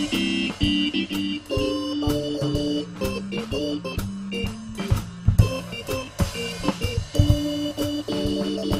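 Korg portable organ with a Hammond-style sound playing an instrumental jazz-blues passage: held chords with notes moving above them.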